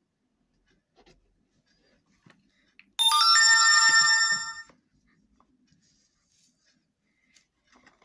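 A loud electronic chime of several steady tones sounding together, like a phone ringtone, starting suddenly about three seconds in and fading out under two seconds later. Faint ticks of paper and a glue stick being handled are heard around it.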